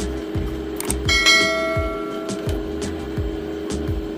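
Background music with a steady beat. About a second in, a bright bell-like ding rings out and fades over about a second and a half: the chime of a subscribe-button overlay sound effect.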